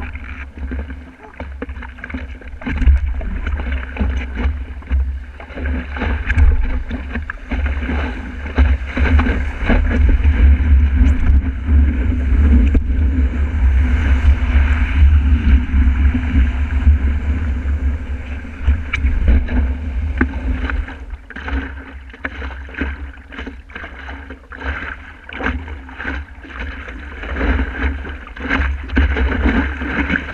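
Wind buffeting the microphone of a camera mounted on a stand-up paddleboard, over rushing surf and water splashing against the board and camera as it rides broken waves. The wind rumble is heaviest through the first two-thirds and eases after about twenty seconds, while the splashing carries on.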